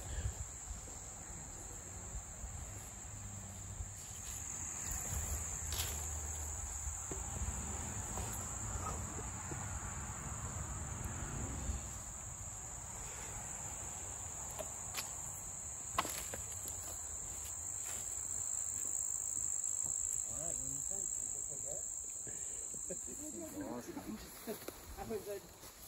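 Crickets chirring in a steady, high-pitched chorus that stops shortly before the end, over a low rumble, with a few sharp clicks, the sharpest about two-thirds of the way through.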